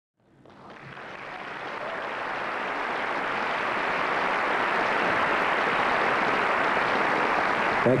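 Audience applauding, building up over the first couple of seconds and then holding steady.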